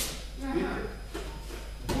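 Cloth of the training jackets and bare feet on the mat as two people grip and step into a throw entry, with a man's voice in a large hall. A short sharp sound comes just before the end.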